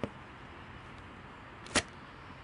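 An arrow being pulled out of an archery target: a light click at the start, then one short, sharp pull sound near the end as the shaft comes free.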